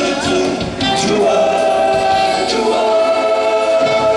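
Live band music with several voices singing together in long held notes. The bass drops away briefly near the end.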